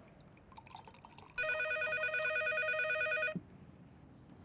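Electronic landline telephone ringer sounding one warbling ring of about two seconds, starting about a second and a half in and cutting off sharply. Before it comes a faint trickle of wine being poured into a glass.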